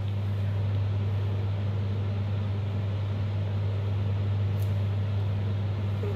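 Steady low hum over an even background hiss, unchanging throughout, with one brief faint high hiss about four and a half seconds in.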